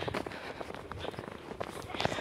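Footsteps in fresh snow: an irregular run of soft crunches and rustles from someone walking.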